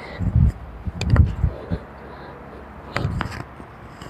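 A pair of kettlebells being cleaned into the rack and push-pressed overhead: a few dull thuds and sharp knocks of the bells and body movement, the clearest about a second in and again about three seconds in.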